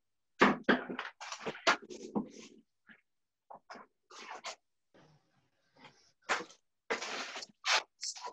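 Hand-pump spray bottle misting water onto wet ink: a quick run of short sprays about half a second in, and three more near the end.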